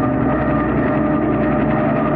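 Helicopter sound effect: a steady, low engine and rotor drone as the helicopter comes in to land.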